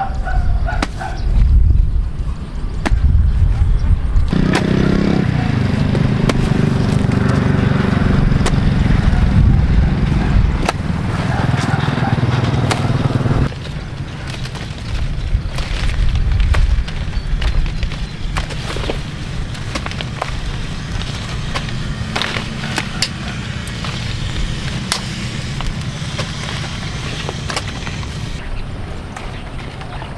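A hoe chopping into dry, clumped soil: irregular sharp strikes over a low wind rumble on the microphone. A steady low drone runs through the first half and stops suddenly about halfway through.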